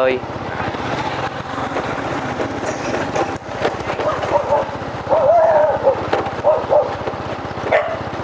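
Dogs barking several times from about five seconds in, over the steady engine and road noise of a moving vehicle.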